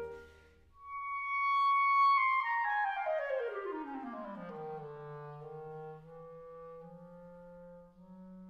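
A clarinet, after a brief pause, holds a high note and then plays a long run falling steadily down into its low register, settling on sustained low notes.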